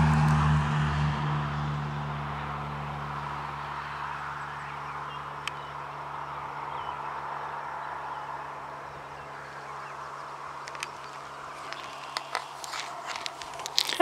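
A passing vehicle's low engine hum fading away over the first couple of seconds, leaving steady outdoor background hiss. Sharp handling clicks and knocks come more often near the end as the phone camera is moved.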